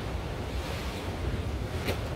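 Wind blowing on the microphone over a steady wash of sea surf, with a brief impact near the end as a jumper lands on rock.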